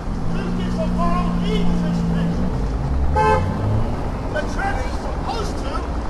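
Street noise: a vehicle horn holds one low steady note for about two seconds, then a short, higher toot sounds about three seconds in, over a steady traffic rumble and scattered voices.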